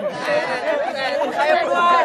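A group of men talking over one another in lively chatter.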